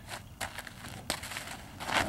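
A Percheron draft horse's hooves stepping at a horse trailer: a few separate crunching footfalls on gritty ground and the trailer floor, with the loudest near the end as the horse shifts out of the trailer.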